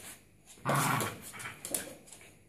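A dog barks once loudly about two-thirds of a second in, with a few short clicks around it.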